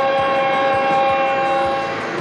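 ABB X2 tilting high-speed trainset's horn sounding one long, steady chord of several tones that cuts off near the end, over the rushing noise of the passing train.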